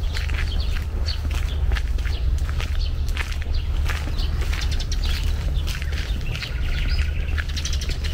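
Several woodland birds chirping and calling in many short, high notes, over a steady low rumble and the footsteps of someone walking along a dirt path.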